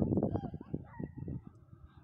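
Wind buffeting the phone's microphone in gusts, with a faint voice in the first second; the buffeting eases off in the second half.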